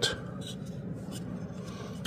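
Faint rubbing and handling of a small plastic model part turned over in the fingers, over a steady low background hiss.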